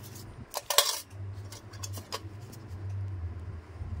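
Sharp metallic clicks and clinks from steel nail-care instruments, the loudest cluster just under a second in, with a few lighter clicks later. A steady low hum runs underneath.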